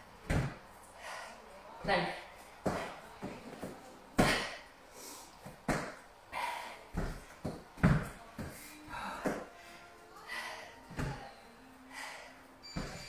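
Dumbbells being set down and feet landing on rubber gym flooring during renegade rows with jump-backs. A dull thud comes every second or so, at an uneven pace.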